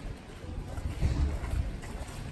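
Low, uneven rumble of wind buffeting the microphone outdoors, with a stronger gust about a second in that eases toward the end.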